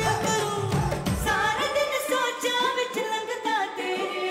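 A woman singing a song live into a microphone with band backing; about halfway through, the bass and drums drop out, leaving her voice over lighter accompaniment.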